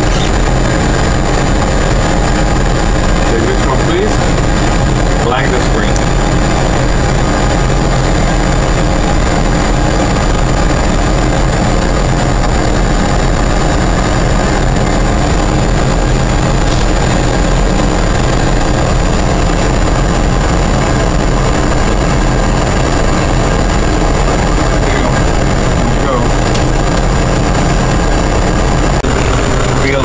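Steady, loud cockpit noise of a Boeing 777 flight simulator: a constant rush with a low rumble, the simulated engine and airflow sound of the airliner in flight, with a thin high whine running over it.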